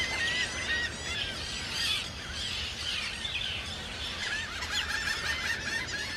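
A crowded seabird nesting colony, mostly terns, with many birds giving short, sharp calls at once in a continuous overlapping chorus.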